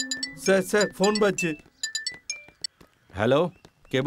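Men's voices speaking in short bursts, with a few brief, sharp clinking sounds in the gap between them; background music fades out at the start.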